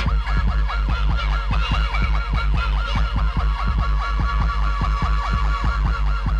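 Early-1990s hardcore rave music played live: a fast synth riff of short notes that each bend up and back down, about five a second, over a heavy continuous bass. A held high synth tone joins it about halfway through.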